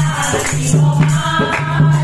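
Group of women singing a Hindu devotional bhajan together, with hand clapping and a dholak drum keeping a quick, steady beat.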